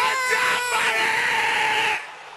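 Loud live dancehall music with a high, held cry over it. A crowd-like noise swells about halfway through, then everything cuts off suddenly at the end.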